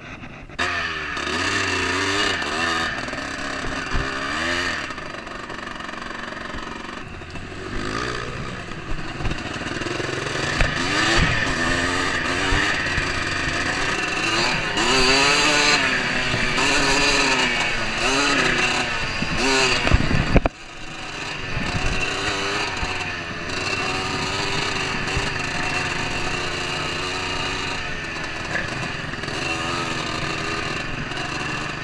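Enduro dirt bike engine heard from the rider's position, picking up sharply about half a second in and then revving up and down as the bike is ridden along a rough trail. The sound drops away abruptly for a moment about twenty seconds in, then picks up again.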